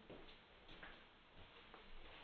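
Near silence: faint room tone with a few soft, irregularly spaced ticks.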